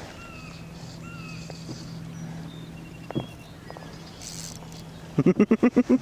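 Quiet open-air background with a few faint high chirps, then, about five seconds in, a man's burst of rapid laughter, eight or so quick 'ha' pulses in under a second.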